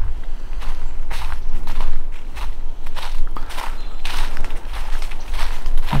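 Footsteps crunching through dry fallen leaves on a woodland trail, about two steps a second.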